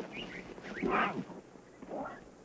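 Young lion cubs calling: a few short pitched mews, the loudest about a second in, rising in pitch.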